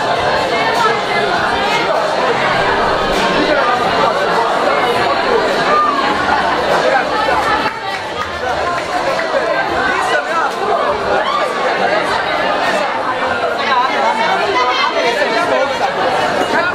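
Crowd chatter: many young people talking at once around banquet tables, their voices overlapping into a steady babble in a large hall.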